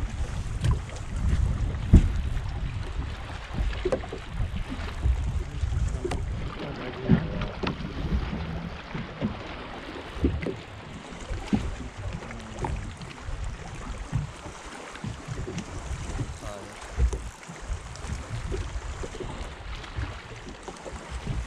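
Wind rumbling on the microphone and water lapping against a bass boat's hull, with scattered knocks and thumps on the boat, the loudest about two seconds in.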